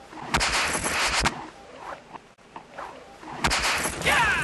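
Several sharp cracks in a loud, noisy burst from about a third of a second to just over a second in. A second burst of sharp cracks begins near the end.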